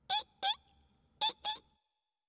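Cartoon-style mouse squeaks: two quick pairs of short, high squeaks, the second pair about a second after the first, the second squeak of each pair rising in pitch.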